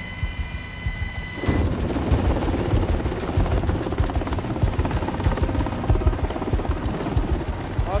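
Military helicopter's rotor beating steadily under a steady high turbine whine, then about a second and a half in turning suddenly louder and fuller as a dense, rhythmic rotor and engine noise.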